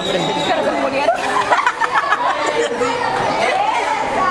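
Several girls' voices chattering over one another, no single voice clear.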